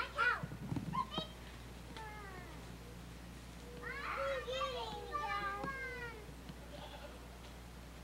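Faint, high-pitched children's voices calling and chattering in short bursts, with the busiest stretch from about four to six seconds in, over a steady low hum.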